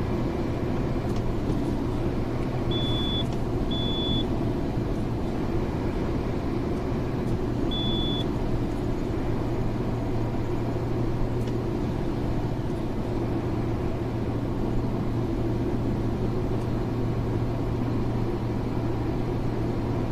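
Steady road and engine noise of a car at highway speed, heard inside the cabin while driving through a tunnel, with a steady low hum. Three short high beeps come about three, four and eight seconds in.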